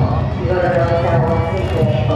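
Awa Odori dance procession: the dancers' chanted calls over the festival band's music, with a steady pulsing beat underneath.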